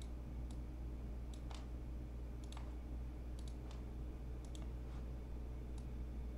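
Computer mouse clicking: about a dozen short, sharp clicks at irregular moments, some close together in pairs, over a low steady hum.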